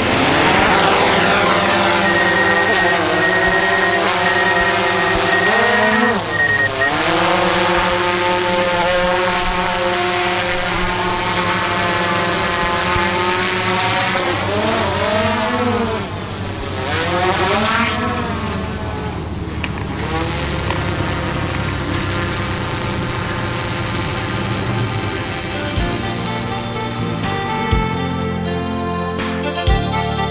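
DJI Mavic 2 Zoom quadcopter drone's rotors whirring as it lifts off and flies, the motor pitch sweeping up and down several times as it manoeuvres.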